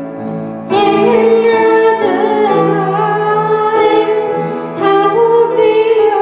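A girl singing a pop ballad into a microphone over a sustained accompaniment, holding long notes with vibrato; a new phrase comes in strongly about a second in and another near the end.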